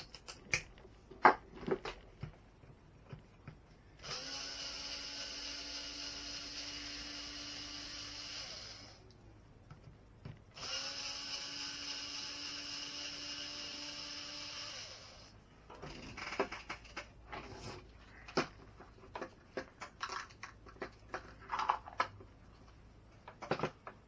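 A small cordless electric screwdriver runs twice at a steady pitch, each time for about four seconds, working screws out of an RC truck chassis during disassembly. Sharp clicks and knocks of plastic and metal parts being handled come before and after the two runs.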